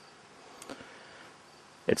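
Faint, steady background hiss with a short, faint sound about two-thirds of a second in.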